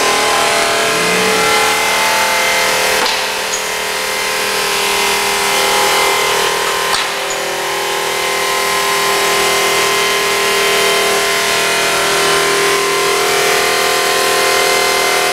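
Park Industries CrossCut miter saw wet-cutting 2 cm quartz: the arbor motor and blade run with a steady whine over the hiss of the cut as the saw head feeds along the miter at just over 40 inches a minute.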